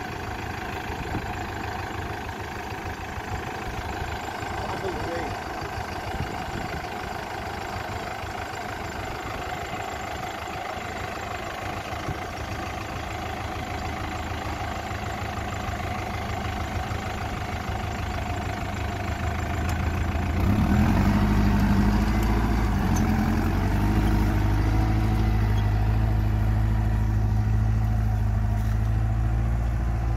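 Mahindra Arjun Novo tractor's diesel engine running steadily under load while it pulls a spring-tine cultivator through the soil. About two-thirds of the way through, a louder, deep rumble comes in and holds to the end.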